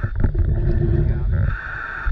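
Water sloshing and splashing against a camera held at the water's surface, a rough, uneven rumble, with a steady hiss near the end.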